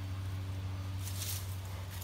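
A steady low hum, with a faint rustle about a second in.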